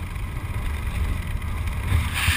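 Airflow buffeting the camera microphone of a skydiver flying under an open ram-air parachute: a low, gusting wind rumble.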